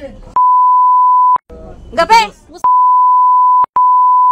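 Censor bleep: a steady high-pitched beep, about a second long, replaces the speech. A short burst of talk follows, then the beep comes in again and runs on, broken by a brief gap near the end.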